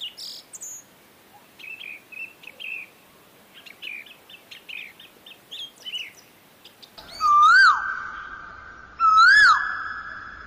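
Birds chirping in short, scattered calls. About seven seconds in, a much louder whistled call comes in: a note that swoops up and down, then holds steady. It is given twice, about two seconds apart.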